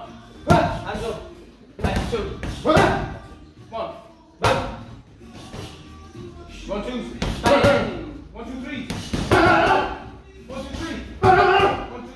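Boxing gloves striking focus mitts in quick combinations: about eight sharp smacks at uneven intervals, with voices and background music.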